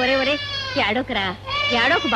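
High-pitched voice in short phrases whose pitch slides up and down.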